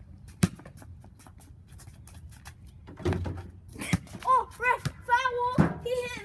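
A basketball hitting and bouncing on a concrete patio, with one sharp knock about half a second in and further thuds around three and four seconds. From about four seconds in, a boy's voice calls out without clear words.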